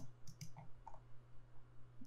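A few faint clicks in the first second, from a computer mouse being clicked and its scroll wheel turned.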